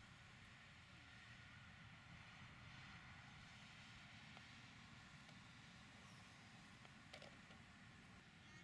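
Near silence: faint outdoor background, with one small sharp click about seven seconds in.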